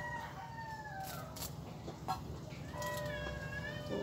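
A rooster crowing faintly: a short falling call at the start, then a longer crow about three seconds in.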